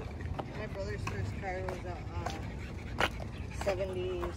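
Outdoor background of distant voices over a low steady rumble, with a few short wavering pitched sounds and a sharp click about three seconds in.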